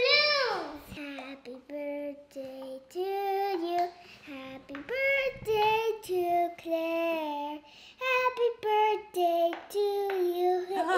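A young child singing a slow tune unaccompanied, several notes held long, in short phrases with brief breaths between.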